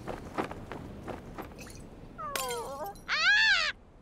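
High-pitched cartoon vocalisations, not words: a short wavering, falling cry about two seconds in, then a louder, longer high cry that rises and falls, over faint background noise.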